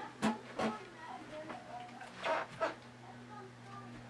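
Handling noise: a few soft knocks and rubs, two near the start and two a little after the middle, as the camera is set in place, over a steady low electrical hum.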